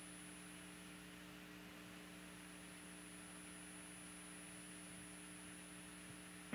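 Near silence with a faint, steady electrical hum from the audio feed.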